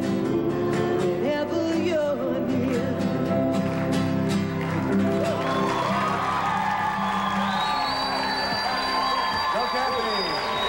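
Live pop band and harmony vocal group finishing a song: strummed acoustic guitar, piano and singing. About halfway through, the band settles into a long held final chord, with cheers and applause under it.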